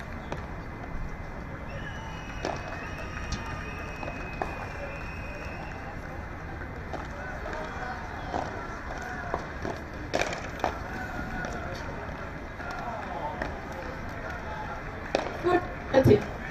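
A padel rally: the ball is struck with solid paddles and bounces on the court, giving irregular sharp knocks over steady crowd-and-venue noise, with the loudest knocks near the end.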